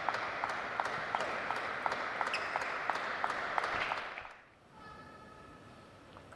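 A table tennis rally: the celluloid-type plastic ball clicks off rackets and table in a quick, even rhythm of about three hits a second over a steady hiss. The rally ends and the clicks stop about four seconds in.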